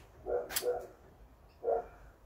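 A dog barking: three short barks, two close together and one more near the end, with a sharp click between the first two.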